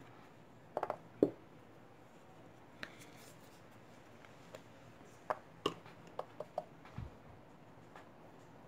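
A few scattered light taps and clicks as small screw-top paint-jar lids are set down and the jars are handled on a cloth-covered table. The taps come as a pair about a second in, then singly, then in a quick cluster in the second half.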